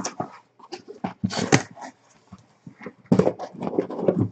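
Cardboard scraping and rustling as a taped shipping case of trading-card boxes is pulled open and the boxes are slid out. It comes as irregular bursts, busiest in the last second.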